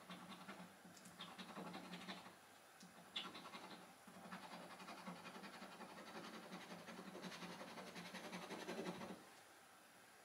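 A metal scratcher tool scraping the coating off a paper scratchcard in rapid, faint back-and-forth strokes. The strokes stop briefly about two seconds in, resume with a sharp tick just after three seconds, and stop about nine seconds in.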